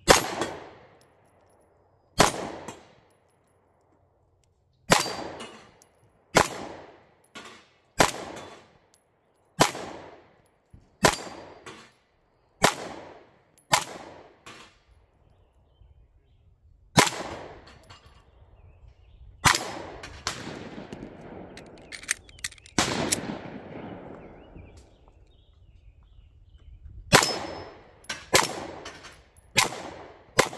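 Ruger Max-9 9mm pistol fired in a paced string of shots, mostly one every second or two with a quicker cluster partway through, each crack followed by a short echo. Some shots are followed by the clang of bullets striking steel targets.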